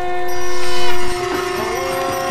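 A held, horn-like chord of several steady tones in the channel's animated ident music. It swells to its loudest about a second in, then drops, and some of its notes shift in pitch.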